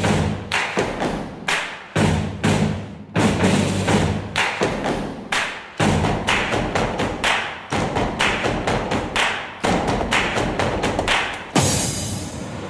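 Percussion-driven stage music: sharp drum strikes several times a second in an uneven pattern over a low bass line, from small waist-hung drums played with sticks over a backing track. It drops to a quieter stretch near the end.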